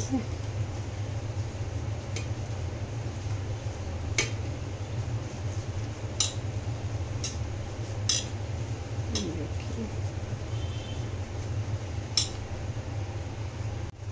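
Hands kneading a crumbly paneer and potato mixture in a steel pot, with a sharp metal clink against the pot about every two seconds, over a steady low hum.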